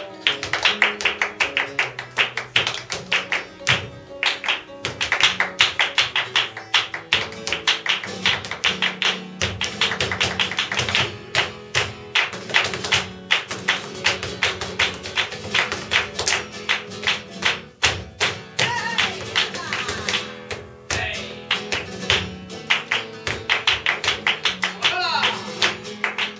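Live flamenco: the dancer's shoes strike out rapid zapateado footwork on a wooden floor, over hand-clapped palmas and a strummed flamenco guitar. The strikes come in quick, dense runs.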